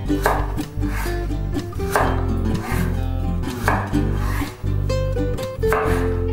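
A chef's knife cutting raw potato into sticks on a bamboo cutting board, a few separate knife strokes onto the board, under steady background music.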